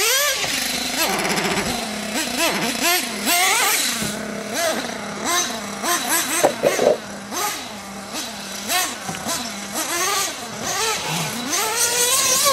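Small nitro glow engine of an RC off-road buggy, its high whine rising and falling over and over as the throttle is worked, with a brief clatter about six seconds in. The engine is thought to be running a little lean.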